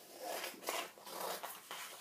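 Scissors cutting paper by hand, several short snips one after another.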